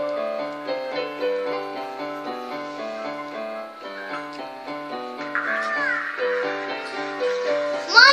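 Portable electronic keyboard played with both hands: a simple melody of single notes over a steadily repeating bass figure.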